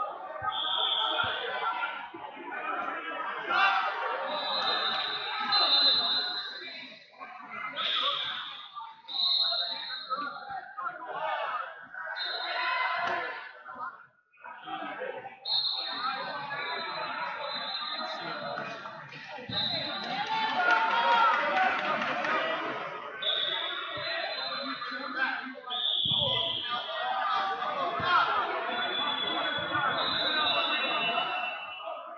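Busy wrestling tournament hall full of voices from the crowd and coaches, with thuds. High steady whistle blasts sound about ten times, some short and some held for a few seconds: referees' whistles from the mats.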